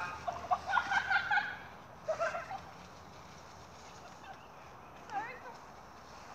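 A person's voice in short, choppy cries and yelps through the first two and a half seconds. Then quiet outdoor air, with one brief chirping sound about five seconds in.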